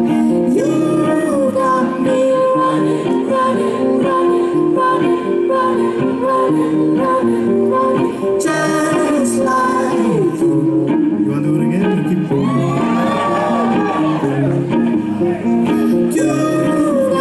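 Live band music through a PA: acoustic guitar and steady backing, with a man singing long, gliding held notes.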